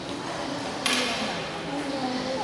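A single sharp, bright impact about a second in, ringing briefly in a large, echoing room, over a low murmur of voices.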